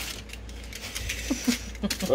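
Aluminium foil crinkling and rustling under hands rolling soft dough, with a few short vocal sounds near the end.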